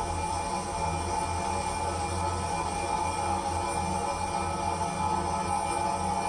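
Steady droning ambient soundscape from an audio collage: a sustained low hum under a bright held mid-pitched tone, unbroken throughout.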